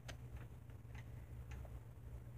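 A few faint, irregular clicks over a low steady hum.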